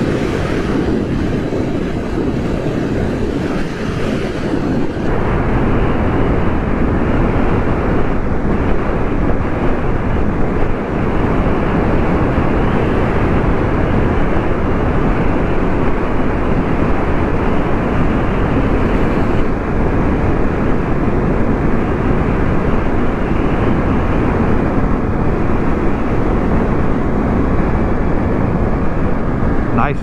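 Steady rush of wind on the microphone, with road and engine noise from a 2023 Suzuki GSX-8S ridden at speed. The rush grows a little louder about five seconds in.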